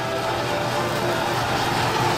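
Handheld butane torch on a gas canister burning with a steady hiss as it sears skewered beef on a grill.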